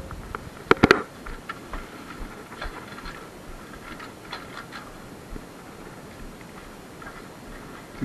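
Footsteps and handling knocks from a body-worn camera as the wearer moves, with a few sharp clicks about a second in, then fainter scattered taps.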